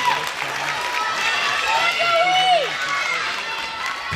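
Overlapping chatter and calls of many voices in a gymnasium, children's voices among them, with one higher voice rising and falling about two seconds in.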